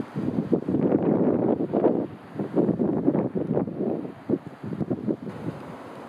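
Wind buffeting the microphone in irregular gusts, easing to a lower, steady rush in the last second or so.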